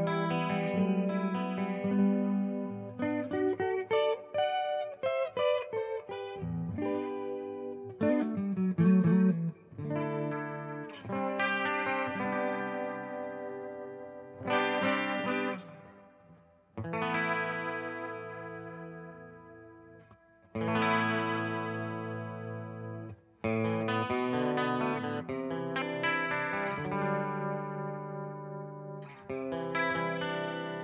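Clean electric guitar, a Fender Telecaster, played through an Electro-Harmonix Polychorus in flanger mode into two Fender Deluxe Reverb amps. Loose chords and short runs, several chords left to ring out and fade, each coloured by the flanger's sweeping comb-filter effect.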